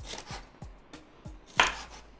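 Chef's knife slicing a green bell pepper into thin strips on a wooden cutting board: steady knife strokes through the pepper onto the board, about three a second, with one louder sharp sound near the end.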